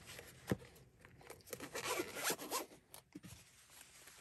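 Zipper of a small zippered carry pouch being pulled shut: one rasping run of about a second and a half, after a single light click near the start.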